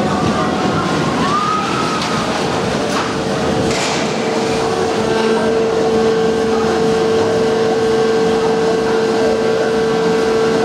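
Boomerang steel shuttle roller coaster: the train runs noisily over the track, then a steady mechanical hum sets in about five seconds in as the train is hauled up the lift incline.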